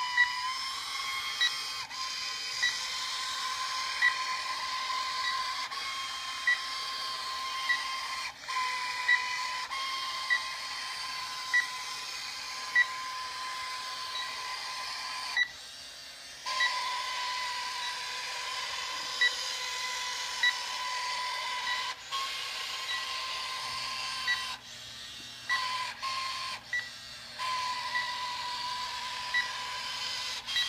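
Electronic sound effects from a 1999 Star Wars Sith probe droid battle-game toy: a steady electronic tone with a short beep about every second and a quarter, stopping briefly a few times. A low hum joins in about three-quarters of the way through.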